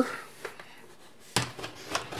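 A model railroad module being turned over by hand and set down on a desk: a single sharp knock about one and a half seconds in, then a few lighter clacks as it settles.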